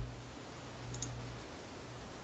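Faint steady room hiss with a low hum from an open microphone, and a single faint click about a second in.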